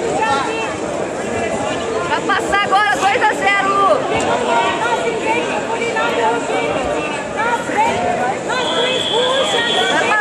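Babble of many overlapping voices in a large hall, with louder shouting a couple of seconds in. A brief steady high tone sounds near the end.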